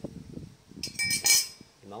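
Metal boat propellers clinking against one another as one is set down among the others: a few sharp clinks with a short bright ring, about a second in.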